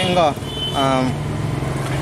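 Brief speech: a voice near the start and a drawn-out syllable around the middle, over a steady low hum and a faint, steady high-pitched tone.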